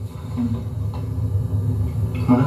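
A low, steady rumble with faint low tones underneath, heard through a television's speaker.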